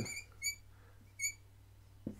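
Dry-erase marker squeaking on a whiteboard as it writes, two short high squeaks about three quarters of a second apart.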